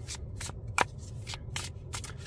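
A Book of Shadows tarot deck being split and shuffled by hand. There are about seven short, crisp card snaps in two seconds, the sharpest a little under a second in.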